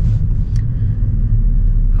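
Car driving, its steady low rumble heard from inside the cabin, with a brief click about half a second in.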